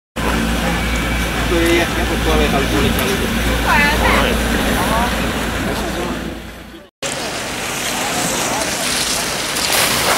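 Wind rumbling on the microphone with voices of people talking in the background. It cuts off suddenly about seven seconds in, followed by a steady hiss.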